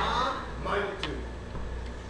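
Faint voices during a pause in a sermon, with a sharp click about a second in and a few lighter ticks, over a low steady hum.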